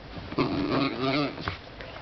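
A person talking to a dog in a sing-song voice, mixed with a dachshund's grumbling vocal sounds as it rubs itself dry on a cushion, with a short click about one and a half seconds in.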